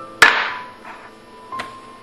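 A glass tumbler set down hard on a countertop: one sharp knock with a short ringing tail, then a fainter knock about a second and a half in. Background music plays throughout.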